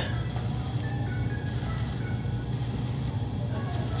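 Potter's wheel running with a steady hum while a needle tool's tip scratches lightly on the spinning leather-hard clay bowl. The scratching is intermittent because the needle catches on only one side of each turn, a sign that the bowl is still off-centre on the wheel head. Quiet background music plays underneath.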